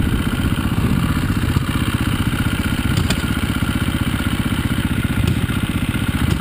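Dirt bike engine running steadily at low revs close by, its firing pulses even throughout, with a couple of faint clicks over it.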